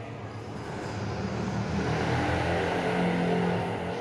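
A motor vehicle's low engine rumble that builds over about three seconds and eases near the end.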